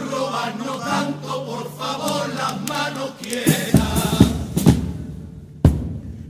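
Male carnival chorus singing a pasodoble together. In the second half, about five loud drum strokes come in under the voices.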